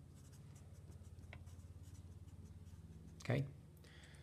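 Felt-tip marker writing on paper: a series of short, faint scratching strokes, over a steady low electrical hum.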